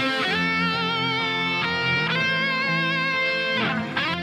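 Electric guitar playing a lead melody in a metal arrangement: held notes with wide vibrato, joined by slides up and down the neck, over sustained low backing notes.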